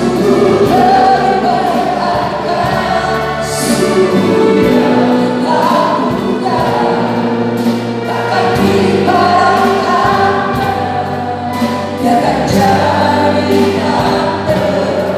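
A four-voice mixed vocal group, men and women, singing a worship song together through handheld microphones and a PA. Steady low held notes run underneath.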